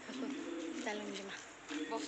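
Women's voices in short phrases, some syllables held at a steady pitch.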